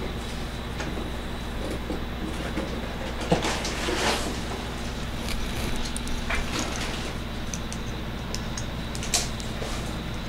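Steady low electrical hum, with a few small clicks and knocks of hands handling a plastic syringe and its tubing while ozonated saline is drawn up.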